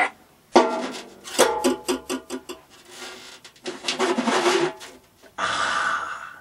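A snare drum struck hard enough to break through its drumhead: a sharp hit about half a second in, then a run of further strikes and a burst of noise near the end.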